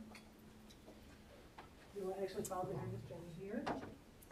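Hushed room with a few faint clicks and knocks, then a voice speaking quietly for about two seconds in the second half.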